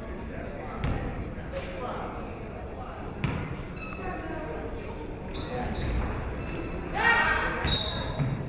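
A basketball bouncing a few times on a hardwood gym floor as a free-throw shooter readies her shot, over a steady murmur of voices in the hall. Near the end, voices call out loudly.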